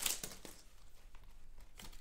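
Faint crinkling and rustling of a torn foil wrapper from a Prizm basketball card pack and the cards inside being handled, with a few light ticks, more of them near the end.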